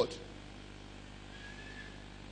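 The end of a man's amplified voice with a short echo of the hall, then a low steady hum of room tone and sound system, with a faint brief high tone about a second and a half in.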